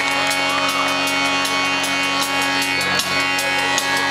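Live indie rock band playing through a festival PA, amplified guitars and keyboards holding steady tones over a quick, regular ticking beat.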